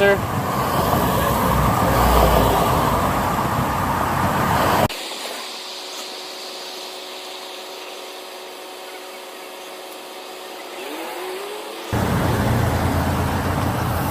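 Street traffic noise, loudest about two seconds in. It drops away abruptly about five seconds in to a much quieter stretch with faint steady tones, and the noise comes back near the end.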